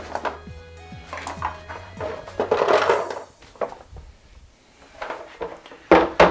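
Plastic darkroom developing trays and tongs knocking and clattering as they are pulled out and handled, with a longer scraping, rustling burst around three seconds in.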